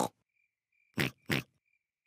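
Two quick snorts from a cartoon pig character, about a third of a second apart, about a second in.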